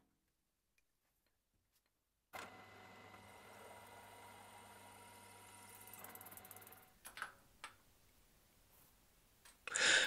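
Warco milling machine spindle running a drill bit into an aluminium block to open up holes, heard as a faint steady hum with a thin whine. It starts a couple of seconds in and stops about seven seconds in, followed by two light clicks.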